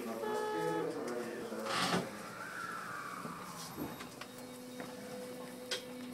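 Electric subway train pulling away from a station, heard from the cab. A run of stepped tones sounds at the start and a short burst of hiss comes about two seconds in. Then a whine rises and falls and settles into a steady electric hum as the train gets moving.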